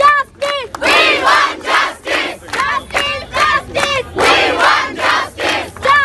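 A crowd of student protesters chanting slogans in unison: short shouted syllables repeated in a steady rhythm, about two to three beats a second.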